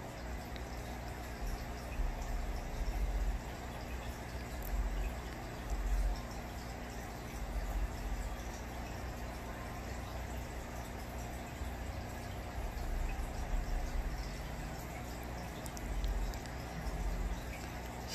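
Aquarium running: steady trickling, bubbling water with a low, steady hum underneath.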